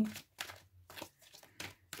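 Tarot cards being handled as one is drawn from the deck: about three brief, soft card rustles and flicks with quiet gaps between them.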